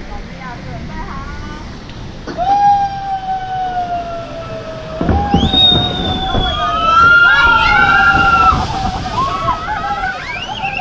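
Log flume riders screaming on the drop: one long, slowly falling scream begins about two seconds in, and more screams join it about halfway through. Rushing, splashing water runs beneath them as the boat plunges down the chute.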